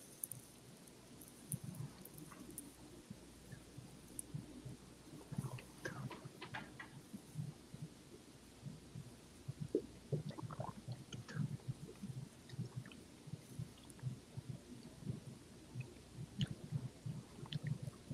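Faint mouth sounds of people tasting bourbon: scattered small smacks and clicks of lips and tongue as the whiskey is worked around the mouth, coming more often in the second half.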